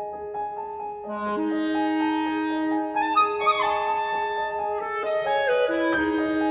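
E-flat clarinet and piano duo. A repeating piano figure is joined about a second in by the clarinet on low held notes, which then moves into higher, busier phrases around the middle.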